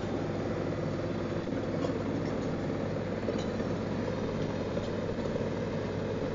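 Tractor engine and Biber 78 wood chipper running steadily with no wood being fed, an even, unchanging drone.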